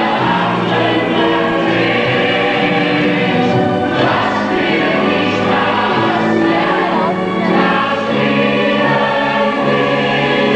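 A stage-musical chorus singing long held chords over orchestral accompaniment, recorded live.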